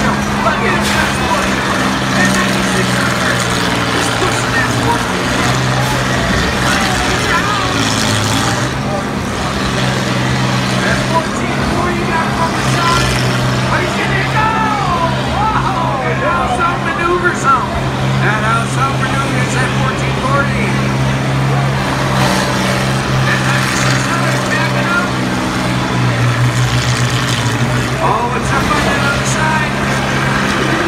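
Diesel engines of several combine harvesters running steadily at a demolition derby, a constant low drone, with crowd voices chattering over it.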